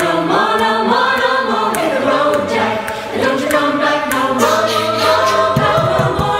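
Mixed a cappella choir of men's and women's voices singing in harmony, with sustained, shifting chords.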